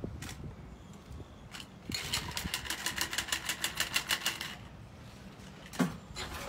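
A shaken cocktail is strained from a metal shaker tin through a fine-mesh strainer into a glass. From about two seconds in, a quick, even metallic rattle of tin, strainer and ice runs for about two and a half seconds at about nine clicks a second. A single knock comes just before the end.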